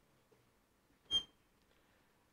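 A single brief high squeak about a second in, from a marker writing on an overhead-projector transparency; otherwise the room is quiet.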